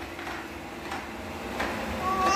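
Shark robot vacuum running: a faint steady hum with a few light clicks.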